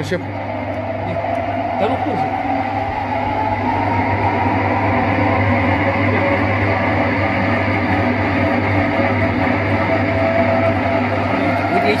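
Motor-driven stainless-steel radial honey extractor spinning honeycomb frames. Its whine rises in pitch over the first few seconds as the drum speeds up, then runs steadily over a low hum.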